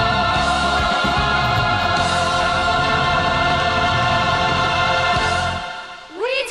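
Choir with accompaniment singing a North Korean military song, holding one long sustained chord. Near the end the bass drops out and the chord fades away.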